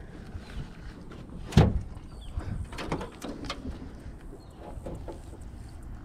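Knocks and clatter against an aluminum jon boat's hull and floor as gear and fish are handled, the loudest knock about a second and a half in, followed by a few lighter taps over a low rumble.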